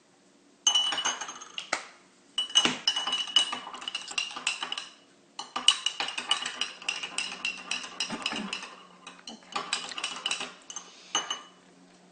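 A metal spoon stirring liquid in a drinking glass, clinking rapidly against the glass with a ringing tone. It comes in four runs of a second to three seconds each, with short pauses between.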